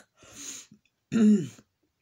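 A woman clearing her throat: a short raspy burst, then a louder voiced one with a falling pitch about a second in.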